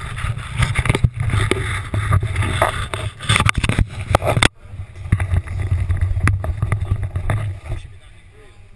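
Parachute canopy fabric and rigging lines rustling and rubbing against the camera, with wind buffeting the microphone and many small clicks. The noise drops out sharply for a moment about halfway through, then goes on.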